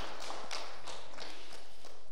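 Soft rustling and light taps of paper pages being handled on a table, over a steady hiss of room noise.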